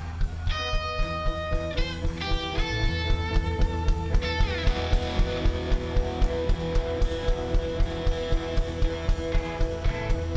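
Live rock band playing an instrumental passage: electric guitars hold ringing notes over a steady, driving drum beat. About four seconds in, a guitar slides down in pitch.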